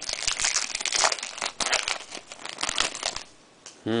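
Trading-card pack wrapper crinkling and crumpling in the hands, stopping about three seconds in.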